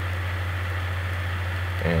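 A steady low hum with a faint even hiss behind it, at a constant level. A voice starts right at the end.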